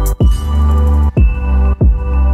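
Electronic background music: held synth chords over a deep bass, broken a few times by short downward sweeps.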